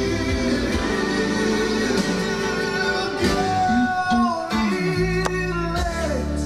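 A song with singing and guitar playing back through a Definitive Technology home theater system's speakers, heard in the room.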